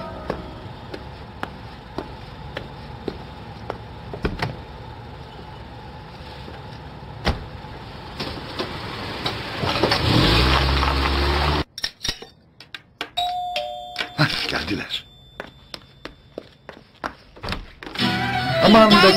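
A car engine starts and revs up, the loudest sound, about ten seconds in, after a stretch of scattered clicks and knocks outdoors. After a sudden cut, a doorbell chimes and is followed by a few knocks.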